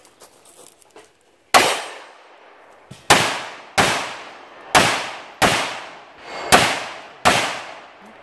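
Seven pistol shots fired from a kneeling position. The first comes about a second and a half in, and the rest follow at an uneven pace of roughly one every half second to a second. Each is a sharp crack with a ringing tail.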